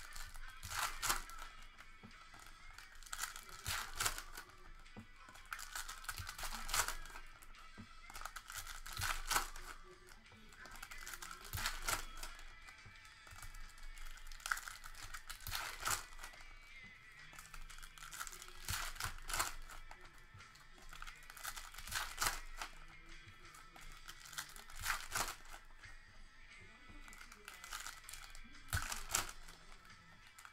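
Foil trading-card pack wrappers crinkling and tearing as packs are opened, in repeated short bursts every second or few, over background music.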